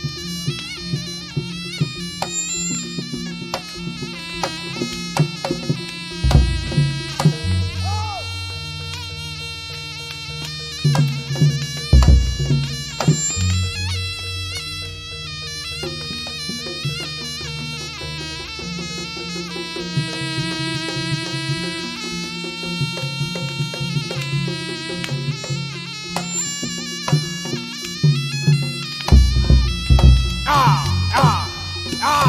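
Live Javanese barongan gamelan music: a reed pipe plays a continuous melody over drums and gongs. Heavy low strokes land about six, twelve and twenty-nine seconds in.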